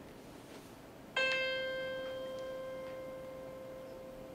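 A single musical note played once, about a second in, and left to ring as it fades slowly: one of the demonstration tones for the musical intervals of the Pythagorean harmony of the spheres.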